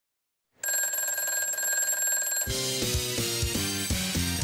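Half a second of silence, then a telephone ringing sound effect lasting about two seconds, after which upbeat theme music with a drum beat starts.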